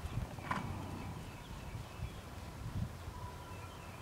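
Hoofbeats of a horse moving on sand arena footing, heard as irregular dull low thuds, with a brief higher sound about half a second in.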